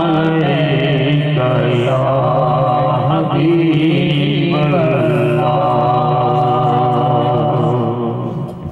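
A man chanting a long, drawn-out melodic devotional phrase into a microphone, holding each note and shifting pitch a few times, breaking off near the end.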